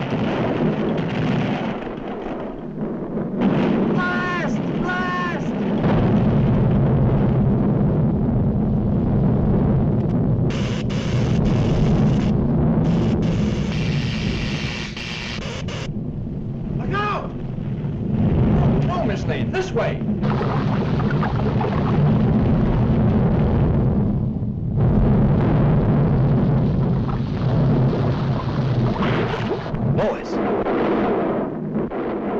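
Cartoon sound effects of an erupting volcano: a continuous loud, low rumble with blasts in it. A few short voice-like calls rise above it, about four seconds in and again past the middle.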